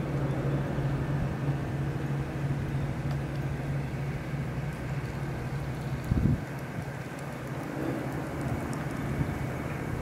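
Steady low mechanical hum with outdoor background noise, with a brief thump about six seconds in, after which the hum is quieter.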